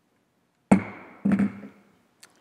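Two gavel strikes on the rostrum about half a second apart, each sharp with a short ring that fades away, closing the moment of silence.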